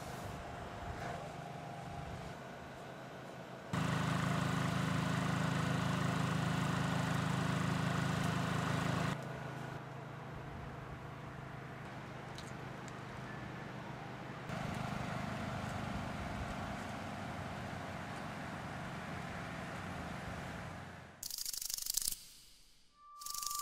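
Outdoor background noise with a steady low mechanical hum. Its level jumps up or down abruptly several times, and it is loudest for about five seconds from roughly four seconds in. A short, louder burst comes right at the end.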